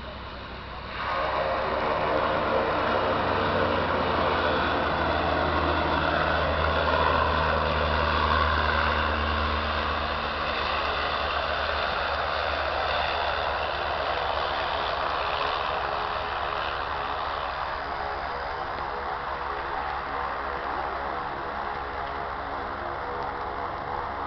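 Single-engine turboprop of a Cessna 208 Caravan running as it lands and rolls out: a loud, steady whine with a low hum, starting suddenly about a second in and slowly fading.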